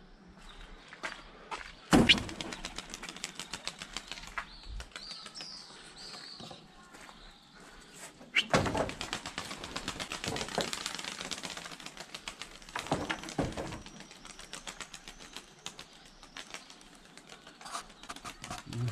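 Pigeons taking off and flying, a fast clatter of wingbeats that comes in long runs, with a sharp knock about two seconds in. A few short high bird chirps come through near the middle.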